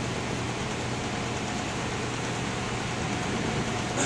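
A ventilation fan running steadily: an even rushing noise with a low hum underneath.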